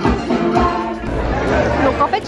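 A live stage band playing upbeat Polynesian-style show music, with singing and a steady low drum beat, under the chatter of the dinner audience.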